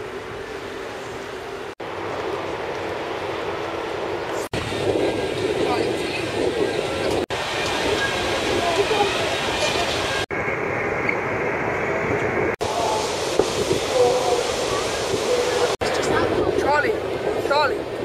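Outdoor noise: a steady rumbling hiss with people talking faintly underneath, broken into several short clips that change abruptly at each cut.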